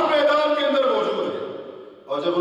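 Only speech: a man speaking in Urdu in a steady lecturing voice, trailing off near the end.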